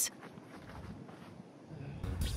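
A short, sharp high sound right at the start, then only faint, steady background hiss.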